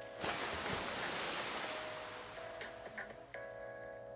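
Shower water spraying and splashing as shampoo is rinsed out of hair, over background music. The water sound starts suddenly and fades away after about two seconds, leaving the music.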